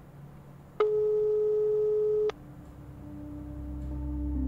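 A single steady telephone tone lasts about a second and a half, starting about a second in and cutting off abruptly. After it a low, held note of ambient music swells in.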